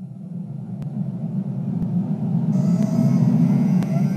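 Intro of an electronic track: a low, rumbling noise swells up. About halfway through, a high hiss and scattered clicks join it.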